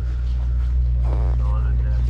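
KTM sport quad's engine idling steadily with a low, even hum.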